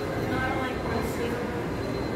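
Reverberant indoor mall ambience: a steady wash of low background noise with faint, indistinct voices, the loudest snatch of them about half a second in.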